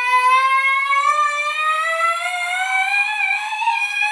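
A boy's voice holding one long drawn-out note that slowly rises in pitch, like a sung call, cutting off just after the end.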